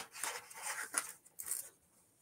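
Soft rustling and rubbing of items being handled on a table, in a few short scuffs.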